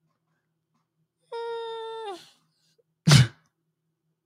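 A man's high, held hum, steady for about a second before it sags in pitch and fades, followed about three seconds in by a short, loud puff of breath like a scoff.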